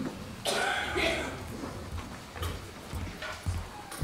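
Indistinct murmured voices in a hall, with a few low thuds of footsteps crossing the stage in the second half.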